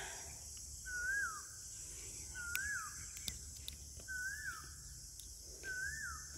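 A bird repeating a short whistled note that rises and then falls, four times at even intervals of under two seconds, over a steady high-pitched hiss; a few sharp clicks come in the middle.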